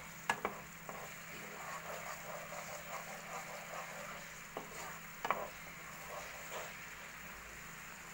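Thick tomato jam sizzling and bubbling in a frying pan while a spatula stirs it, with sharp knocks of the spatula against the pan about half a second in and again about five seconds in.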